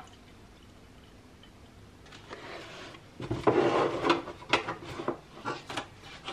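Oat drink poured from a carton into a ceramic mug, starting softly about two seconds in and glugging more loudly from about three seconds, mixed with light knocks of kitchen handling.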